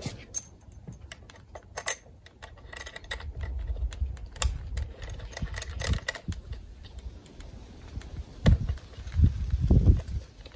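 Handling noise from a coax plug being fitted to a handheld SWR meter and its buttons pressed: scattered small clicks and rattles, with a few heavier low thumps near the end.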